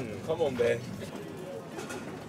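Indistinct voices of shoppers talking, with a short burst of chatter in the first second, over the steady murmur of a busy shop.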